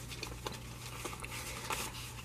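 Paper banknotes rustling as a stack of dollar bills is fanned and counted by hand, with a few soft flicks.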